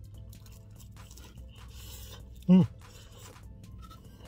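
A man chewing a mouthful of pizza crust with ham filling: small wet mouth clicks and a brief crunchy patch, then a short hummed "mm" about two and a half seconds in. Faint background music runs underneath.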